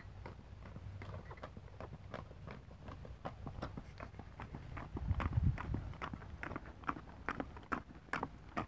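Hooves of a ridden horse striking a packed dirt lane in a quick, even beat, growing louder as the horse comes up close. A low rumble sounds about five seconds in.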